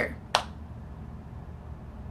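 A single sharp click about a third of a second in, then quiet room tone with a low hum.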